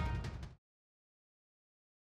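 Dramatic background score with deep drums and high sustained tones, which cuts off abruptly about half a second in and is followed by total silence.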